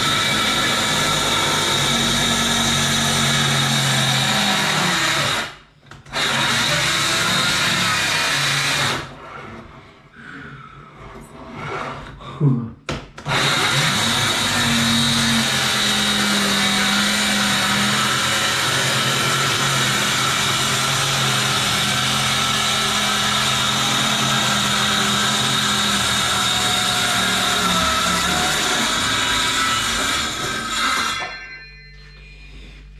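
Cordless circular saw cutting through a kitchen countertop, its motor running steadily under load. The saw stops for a moment about five seconds in, then falls silent for about four seconds in the middle, with one short blip, before cutting resumes.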